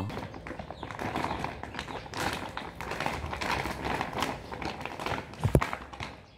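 A paper shopping bag being handled and folded, making rapid irregular taps and crinkles, with one louder thump about five and a half seconds in.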